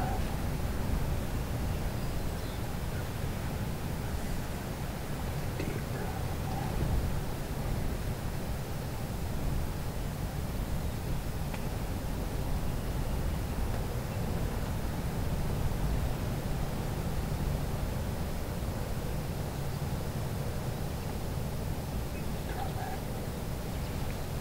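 Steady low rumble of wind on the microphone, with a few faint, brief sounds a few seconds apart.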